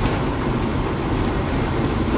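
Steady rumble and hiss of a car moving in traffic, heard from inside the cabin.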